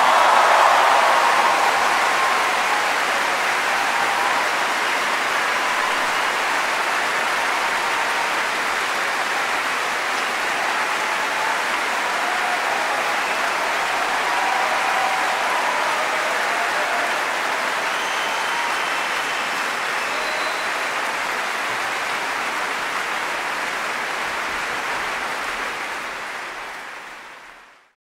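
Applause from a large concert-hall audience right after the song ends, loudest at first and then steady. It fades out over the last couple of seconds.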